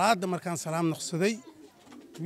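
A man's voice speaking in short phrases, which stops about a second and a half in.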